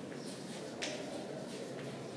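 Chalk writing on a chalkboard: faint, short scratches and taps of the chalk as letters are formed, the sharpest a little under a second in.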